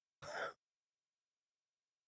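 A short breathy exhale, a sigh from a person at the microphone, about a quarter of a second in; the rest is silence.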